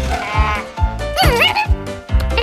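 Cartoon background music with a steady beat, over which a character twice makes wordless voice sounds that slide up and down in pitch.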